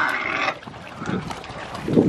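Domestic pigs grunting and chomping as they feed. A loud, harsh grunt comes in the first half-second, followed by quieter munching and snuffling.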